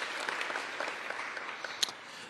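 Audience applauding, the clapping gradually dying away toward the end.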